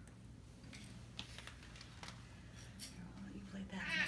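Faint rustling and light clicks of a Christmas stocking and a packaged toy being handled, growing louder near the end, over a low steady hum.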